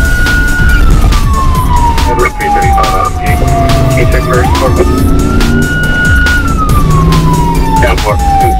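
Police car siren wailing. Its pitch holds high, falls slowly, climbs back quickly about four seconds in, holds, then falls again. Background music with a steady beat runs underneath.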